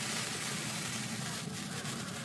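A steady rushing hiss, like a noise sound effect, holding at an even level with no pitch or rhythm.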